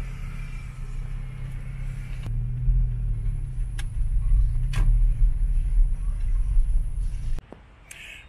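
Car interior noise while driving: a steady low engine and road rumble heard from inside the cabin, with a couple of faint clicks. It cuts off suddenly near the end.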